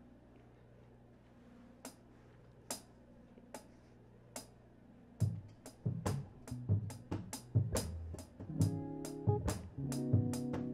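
Live band starting a song. Four evenly spaced clicks count it in, then a drum kit comes in with kick and snare about halfway through, and bass and chords join near the end.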